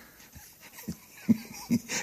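A few short, quiet vocal sounds, brief hums or breaths, in a pause between spoken lines. They come about a second in and again near the end.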